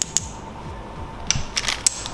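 Sharp clicks from a small metal tripod mount handled in the fingers: two at the start and a quick cluster in the second half.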